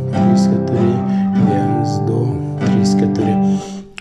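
Nylon-string classical guitar strummed in a steady four-beat rhythm, the first two beats ringing long and beats three and four strummed quicker. The sound dips briefly near the end.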